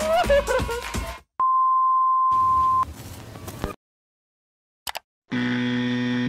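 Music cuts off, then a single steady electronic beep tone is held for about a second and a half. Near the end, after a short silence, a steady, buzzy electronic tone begins.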